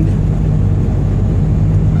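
Truck's diesel engine running steadily while cruising, heard from inside the cab as an even low hum.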